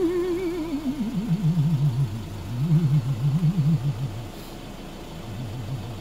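A person humming a wavering tune that sinks in pitch, in bursts, over the Iveco Daily's four-cylinder diesel engine idling steadily inside the cab.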